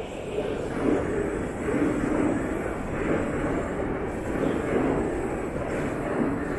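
Steady low rumble of passing vehicles around a city junction under an elevated railway, swelling and easing irregularly.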